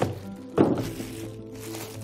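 Two dull thunks about half a second apart as a plastic-wrapped steel telescope tripod is lifted and handled, with the plastic wrap crinkling near the end.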